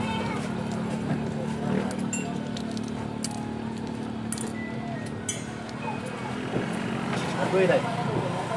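A steady low engine hum from a nearby vehicle, with scattered small clicks and crackles of a balut eggshell being peeled by hand in the middle.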